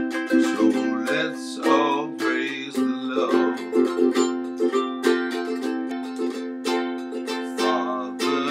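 A ukulele strummed in a steady rhythm of chords.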